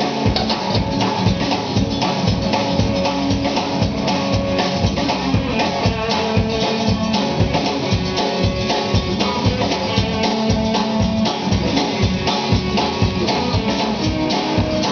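Live country-rock band playing an instrumental passage without vocals: a drum kit keeping a steady beat under acoustic guitar, electric guitar and upright bass.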